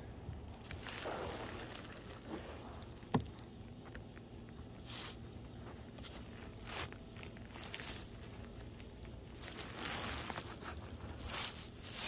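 Rolled asphalt roofing being unrolled and pushed along a roof by gloved hands: faint, intermittent scuffing and brushing of the roll against the roof, with one sharp tap about three seconds in.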